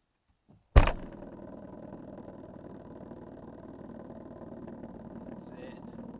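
A car's trunk lid slams shut with a sharp bang about a second in. A plastic sparkling-water bottle standing on the car's metal roof then buzzes steadily against the roof, set vibrating by the slam.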